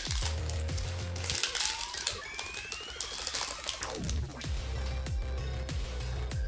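Electronic background music with a heavy, steady bass and repeated falling sweeps. Over it, a foil booster pack wrapper crinkles in the hands.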